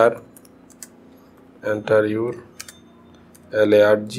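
Typing on a laptop keyboard: irregular, separate keystrokes, broken by short bursts of speech in the middle and near the end.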